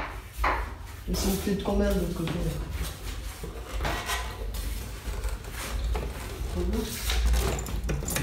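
Knocks and clatter of a metal can-type stage spotlight being handled and unscrewed from its ceiling bracket, a few separate bumps spread through, with some low muttered words between them.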